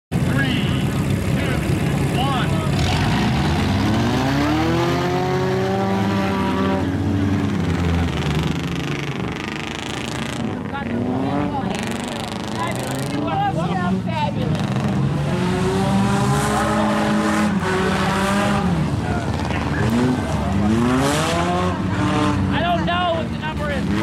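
Several four-cylinder race cars accelerating and driving around a dirt track, their engines revving up and down over and over as they race.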